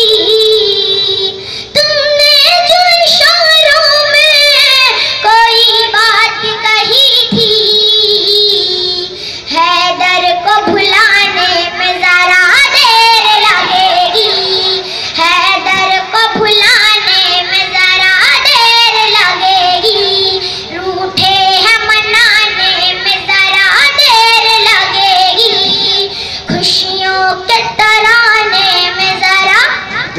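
A schoolgirl singing an Urdu ghazal solo into a microphone, in long held notes with wavering ornaments.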